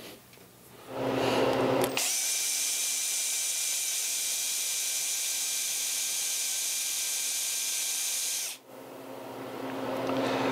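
Cordless drill boring into the handle of a toy microphone, running steadily with a high whine from about two seconds in and stopping suddenly near the end. The bit is not cutting the hard filler cast inside the handle, which the owner takes for concrete.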